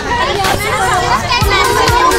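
Many children's voices chattering and calling out at once, with adult voices among them, over background music with a low beat.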